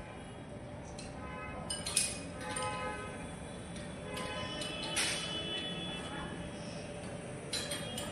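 Light clinks of hard tile pieces being handled and tapped by hand and tool, with a few sharper clicks about two and five seconds in and another near the end, over faint background music.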